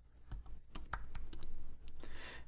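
Keystrokes on a computer keyboard: a quick, irregular run of key clicks as a command line is edited and entered.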